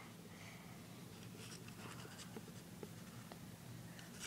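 Very quiet room tone with a low steady hum, faint scratching and a few soft ticks.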